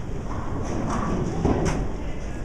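Bowling-alley din: a steady low rumble of bowling balls rolling on the wooden lanes, with a few short sharp clatters of pins.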